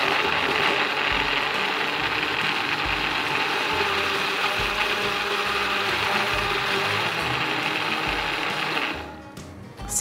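Electric countertop blender running steadily at speed, puréeing a thick tofu and egg-yolk dressing into a smooth cream, then switching off about nine seconds in.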